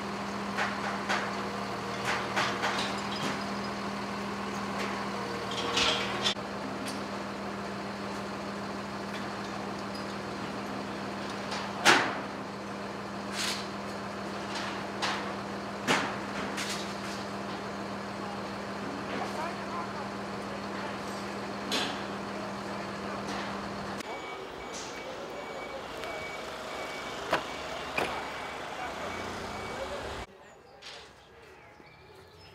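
Truck-mounted mobile crane's diesel engine running steadily, with sharp knocks from the steel ride parts being worked on, the loudest about twelve seconds in. The engine drone stops about four-fifths of the way through, leaving a few more knocks and a faint intermittent beep.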